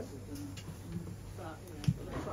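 A pigeon cooing a few short, low hoots in the background, with a faint snatch of voice and a soft thump near the end.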